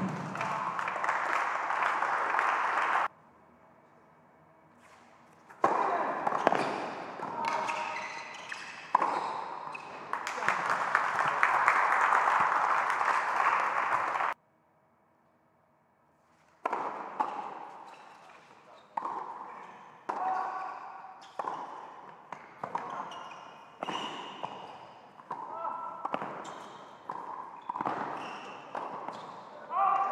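Tennis ball being bounced and struck by racket on an indoor hard court, each hit and bounce echoing in a large, mostly empty hall, with stretches of applause. The sound cuts out abruptly twice.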